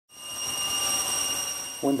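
Steady high-pitched machinery whine over a steady rushing noise, fading in at the start, from ramp equipment around a parked Boeing 747 airliner. A voice begins near the end.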